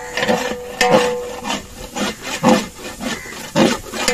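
A metal ladle stirring thick onion-tomato masala in a large aluminium pot, scraping the bottom in repeated rasping strokes with an occasional sharp clank against the metal.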